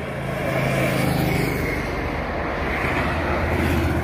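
A motorcycle passing along the road, its engine loudest about a second in, over a steady rush of road traffic.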